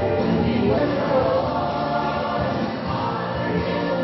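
Choir singing gospel music, steady and continuous.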